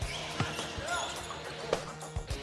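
Basketball dribbled on a hardwood court: a few sharp bounces, the last near the end.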